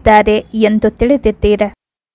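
A woman's voice reading aloud in Kannada, breaking off a little before the end into complete silence.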